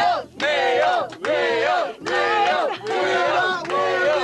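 A woman's excited shrieking and laughter: high-pitched wordless cries with rising and falling pitch, broken by a few brief pauses for breath.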